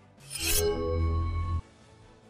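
A news-bulletin transition sound effect: a noisy whoosh swells in, then a short held synth chord with a deep bass that cuts off abruptly about a second and a half in.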